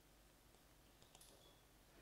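Near silence: faint room tone with a few faint clicks about a second in, from a marker writing on a whiteboard.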